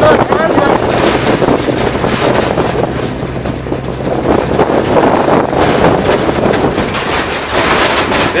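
Engine of a passenger truck running steadily on a rough dirt mountain road, with wind buffeting the microphone. Its low hum weakens about halfway through.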